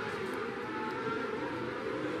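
Micro sprint race cars running in a pack around a dirt oval, their engines making a steady whining drone.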